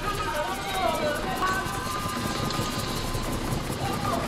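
Steady engine and road rumble of a moving vehicle, with a high voice in wavering, partly held notes over it.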